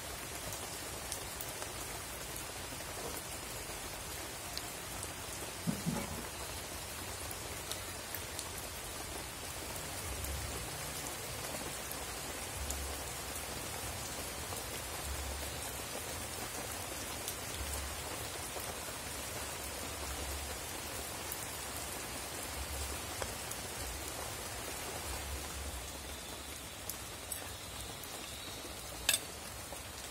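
Small open wood fire under a pot of boiling arrowroot: a steady hissing with an occasional sharp crackle from the burning wood.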